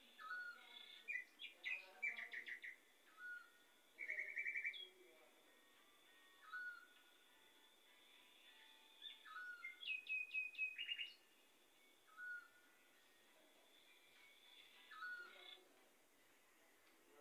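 Quiet bird chirps and trills in scattered bursts, busiest in the first three seconds and again around ten seconds in, over a faint steady high whine.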